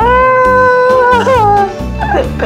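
A long high-pitched squeal from a person, held steady for about a second, then wavering and falling away, over background music with a steady beat.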